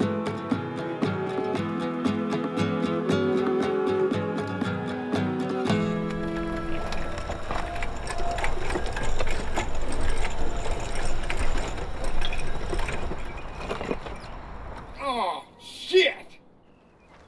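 Acoustic guitar music that stops abruptly about six seconds in. It gives way to the whirring electric motor of a power wheelchair and its wheels crunching along a gravel path. Near the end there is a man's strained, wavering cry.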